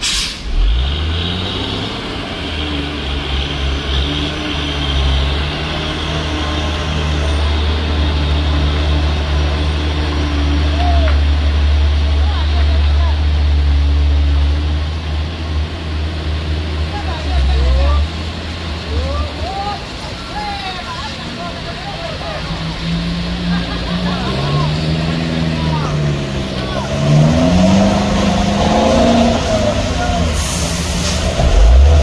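Loaded cargo truck's diesel engine labouring up a steep, wet hairpin grade, a deep steady rumble for about the first nineteen seconds, with a short burst of hiss right at the start. After that the engine drops back and people's voices call out over the rain-wet road noise.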